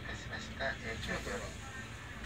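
Speech over the low, steady rumble of a Kintetsu limited express train moving slowly past.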